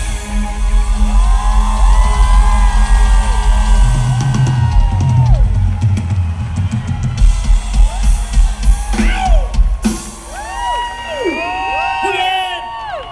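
Live electronic pop music played loud through a concert PA, with a heavy bass drum and drum kit beat, heard from among the audience. About ten seconds in the music stops and the crowd cheers, screams and whistles.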